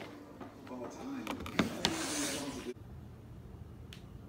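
A woman's voice exclaiming, broken by a few sharp clicks, then an abrupt cut to quiet room tone.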